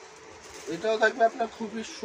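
A person's voice speaking, starting under a second in, after a moment of quiet room tone.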